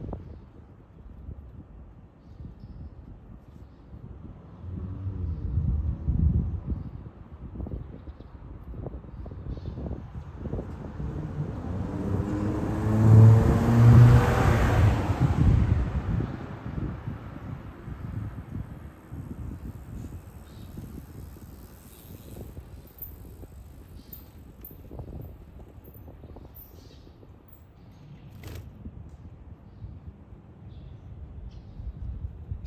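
A road vehicle passing by: a low rumble that builds to its loudest about halfway through, then fades. A quieter swell of rumble comes earlier.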